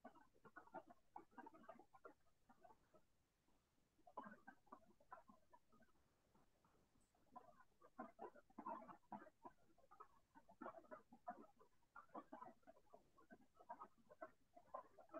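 Faint computer keyboard typing: bursts of quick, irregular key clicks with short pauses between words.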